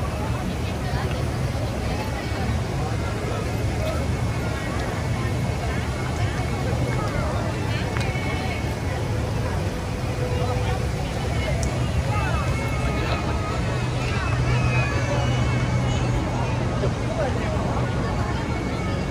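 Busy city street ambience: many people talking at once over a steady low rumble of traffic.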